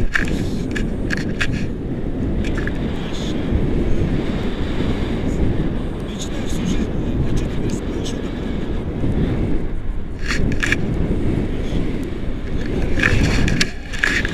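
Airflow buffeting an action camera's microphone in flight under a tandem paraglider: a loud, steady, low rumble, with a few short clicks about ten seconds in and near the end.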